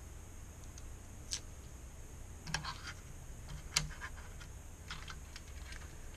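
Scattered light clicks and taps, about half a dozen, from hands handling a small wire connector and parts against a monitor's sheet-metal chassis, the sharpest one a little before four seconds in, over a steady low hum.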